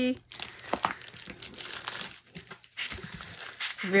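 Clear plastic film on a diamond painting canvas crinkling and rustling as the canvas is unfolded and flattened by hand.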